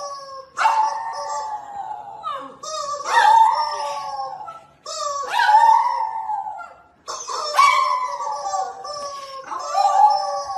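A French bulldog howling: about five long drawn-out howls, each sliding down in pitch, with short breaks between them.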